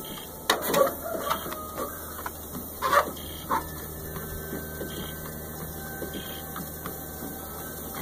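Small treadmill's motor running steadily with a faint whine while a dog walks on the belt. There are a few sharp clicks and knocks in the first few seconds.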